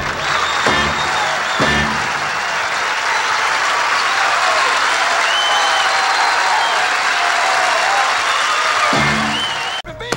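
Studio audience applauding as a live band's song ends, with the band's music heard in the first two seconds.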